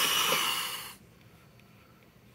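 A person sighing: one loud, breathy exhale into a close microphone lasting about a second, then only faint room noise.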